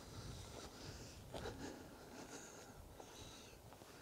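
Near silence: faint background hiss with a few soft, faint sounds about a second and a half in.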